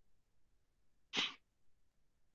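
Near silence broken about a second in by one short, breathy burst from a person's mouth or nose.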